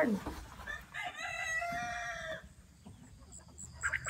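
A rooster crowing once, a single call about a second and a half long held at a nearly steady pitch.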